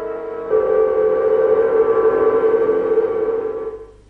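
Factory whistles (hooters) sounding together in a steady held chord as a mourning salute. The chord shifts about half a second in and fades out near the end.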